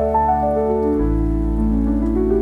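Gentle solo piano playing a slow line of single notes that steps downward over a held bass, with a new low bass note struck about a second in. A steady rain sound is mixed in underneath.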